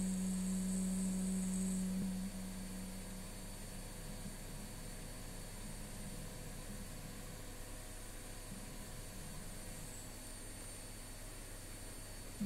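A boy's long held note of Quran recitation (tilawah) fading out about two seconds in, followed by a long pause in which only a steady electrical hum and hiss remain.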